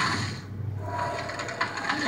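Cartoon sound effects from a film soundtrack, played through a TV and picked up by a phone's microphone: a clicking, rattling sound over a low hum, with a steady tone in the second half.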